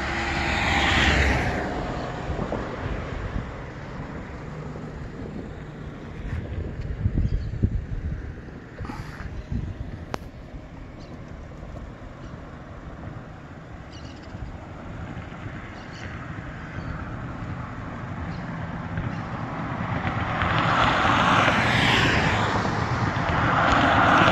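Cars passing on a two-lane highway: one goes by in the first two seconds, then road noise settles. Another vehicle swells in from about twenty seconds and passes near the end. Low wind rumble on the microphone is heard in between.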